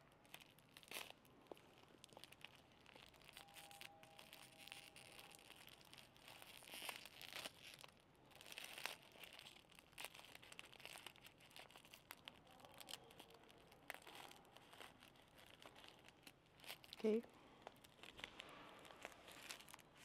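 Faint crinkling and tearing of an onigiri's plastic film wrapper as it is pulled open by its tear strip and peeled off the rice ball, in many small rustles and crackles.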